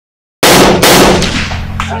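Gunfire: two loud shots about half a second apart and a weaker third, each ringing out, over a low steady hum.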